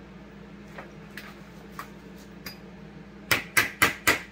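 Metal hand tools knocking on a workbench: a few light clicks, then three sharp metallic knocks in quick succession near the end, as stuck carburetor screws are worked at.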